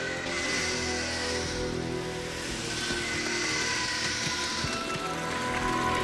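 Film soundtrack music: sustained orchestral chords held steady, over a soft hiss.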